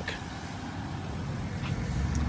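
Steady outdoor road-traffic rumble and background noise, growing slightly louder toward the end.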